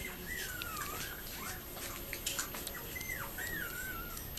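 Six-week-old Yorkipoo puppy whimpering: a string of thin, high, wavering whines, four or five in all, the longest lasting about a second near the start.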